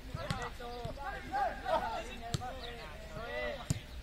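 Footballs kicked back and forth in a passing drill: several sharp thuds of boot on ball at irregular intervals, over players' shouts and calls.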